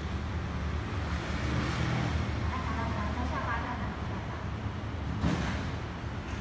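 Steady low background rumble, with faint distant voices and one short sharp noise about five seconds in.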